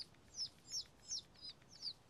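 Ducklings peeping: a faint run of short, high peeps that slide down in pitch, about three a second.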